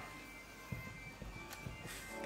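Quiet room tone with a faint steady hum and a few soft clicks.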